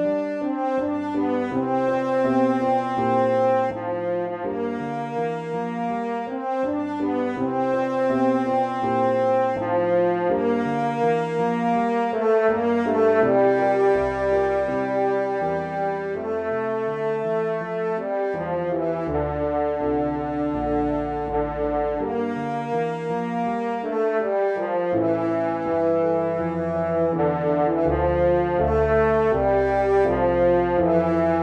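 The men's (baritone) melody line of a choral anthem, played in a horn-like brass tone as a part-learning track over a chordal accompaniment with a moving bass line, in held, legato phrases.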